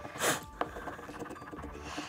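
A coin scratching the coating off a paper lottery scratch-off ticket: one louder scrape about a quarter second in, then quieter, rough scraping.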